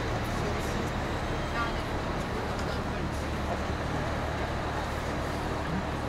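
Busy city-square ambience: passers-by talking over a steady low rumble.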